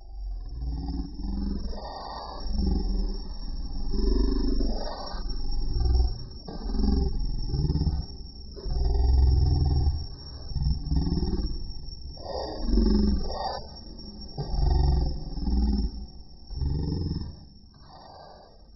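Deep, roar-like creature sounds, a sound effect rising and falling in about nine long swells, heaviest in the deep bass.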